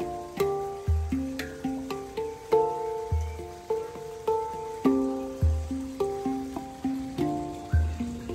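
Handpan played with the hands: a continuous rhythmic run of struck steel notes that ring on and overlap, with a deep low note about every two seconds under the melody.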